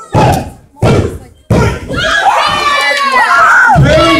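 Three heavy thuds on a wrestling ring in quick succession in the first second and a half, each booming briefly in the hall. Then comes a loud swell of crowd shouting and cheering.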